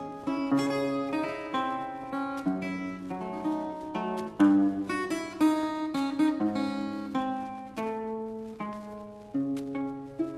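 Russian seven-string acoustic guitar playing solo, plucked melody notes over bass notes and chords, with a strongly accented chord about halfway through.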